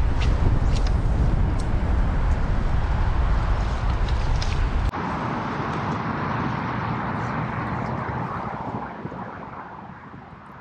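Wind buffeting an outdoor microphone: a heavy, uneven low rumble with a few faint clicks, which changes about halfway through to a softer steady rush of wind and water that slowly fades.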